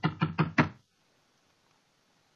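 A quickening run of sharp knocks, four in quick succession, stopping under a second in.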